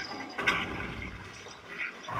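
Car crash: a sudden loud impact about half a second in, followed by a rattling noise that fades away.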